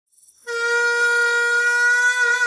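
Music: a single reedy wind-instrument note that starts about half a second in and is held steady.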